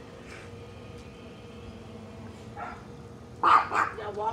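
A small dog barking: a fainter bark, then two loud barks in quick succession near the end.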